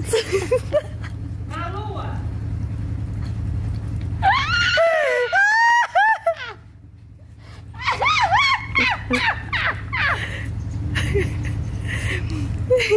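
High-pitched excited voice shrieking and whooping in two spells, about four and eight seconds in, over a steady low hum.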